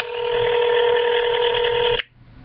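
Telephone ringback tone from a phone's speaker: one steady ring about two seconds long that cuts off sharply, the sign that the call is ringing at the other end.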